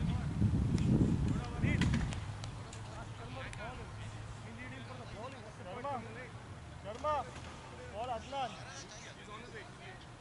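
Wind buffeting the microphone, a loud low rumble for the first two seconds, then faint distant voices of players calling out on the field.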